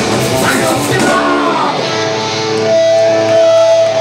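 Loud live punk rock band: electric guitars, bass and drums with shouted vocals. About a second and a half in, the drums and bass stop at the end of the song, and a steady electric guitar tone rings on.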